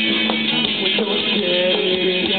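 Live rock band playing an instrumental passage, electric guitars over a drum kit.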